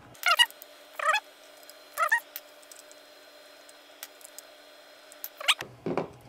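Short, high squeaks about a second apart, three early and one more near the end: the screws of the hard drive's metal caddy squeaking as they are backed out with a screwdriver.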